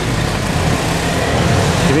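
A motor vehicle's engine running steadily, with a continuous traffic hiss.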